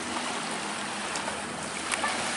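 Steady rush of surf and moving water at the shoreline, with a short click near the end.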